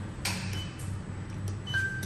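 Steady low hum inside a Mitsubishi Electric elevator car, with a short soft rustle early on and a single high electronic beep near the end as the door-close button is pressed.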